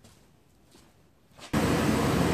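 GMC full-size van's engine idling steadily, coming in abruptly about a second and a half in after near quiet. It runs on a newly fitted throttle position sensor and sounds good, with everything working properly.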